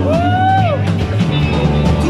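Live rock band playing loud through a PA: electric guitars, bass and drum kit. Near the start one held note slides up, then back down.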